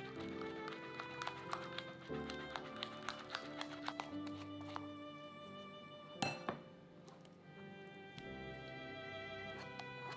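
Soft background music with string-like held notes. About six seconds in there is a brief clink, the metal sieve knocked against the glass bowl.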